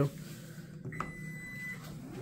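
Power liftgate of a Toyota bZ4X: its close button clicks about a second in, together with a short, steady warning beep that signals the tailgate is about to close.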